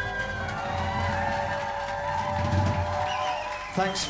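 A live folk-rock band holding its final chord as a long, steady note, with a tin whistle line wavering above it.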